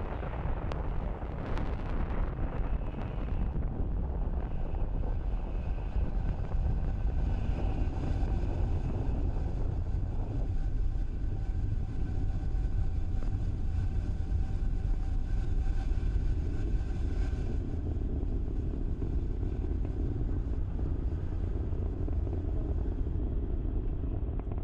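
Falcon 9 first stage's nine Merlin 1D engines burning during ascent: a steady low rumble that holds at an even level throughout.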